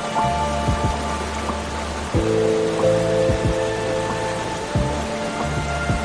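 Slow, soft piano music with held notes and chords changing every second or two, over a steady background of running, splashing water.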